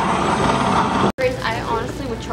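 Dense, steady arcade noise from the game cabinets and the room, with faint voices in it. It cuts off abruptly about a second in, and a woman's voice follows at close range.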